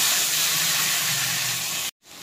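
Loud, steady sizzling hiss of masala frying in hot oil in a pan, cut off suddenly just before the end.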